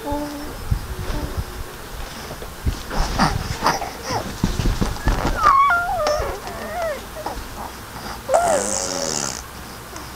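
Baby vocalising: high, wavering squeals that glide up and down about halfway through, and a short breathy squeal with falling pitch near the end, over low thumps of movement in the first half.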